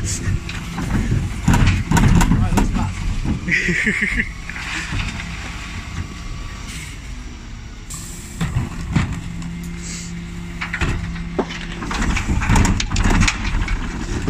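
Dennis Elite 6 refuse lorry running steadily at the kerb while its Terberg OmniDE rear lift tips wheelie bins. Several sharp knocks and clatters of the bins against the lift come in the second half, with a brief high-pitched tone about three and a half seconds in.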